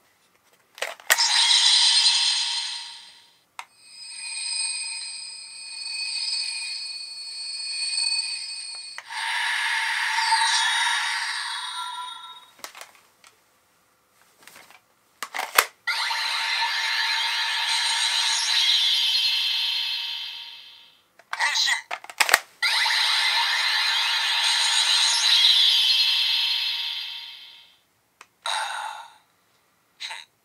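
CSM V Buckle toy transformation belt playing its electronic Kamen Rider Ouja transformation sound effects through its built-in speaker, in several long bursts. Sharp clicks come between them as the card deck is handled and slotted into the buckle.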